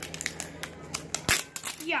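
A toy's cardboard and plastic packaging being handled and peeled open at its tear strip: a run of small crackles and clicks, the sharpest just past a second in.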